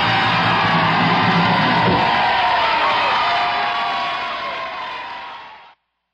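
Live 1950s doo-wop and rock and roll recording ending: the band's full sound with bass drops away about two seconds in, leaving high wavering voices and cheering that fade out and cut off just before the end.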